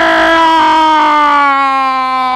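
A Spanish-language radio football commentator's long drawn-out goal cry, "gooool", held as one loud unbroken shout that slowly falls in pitch.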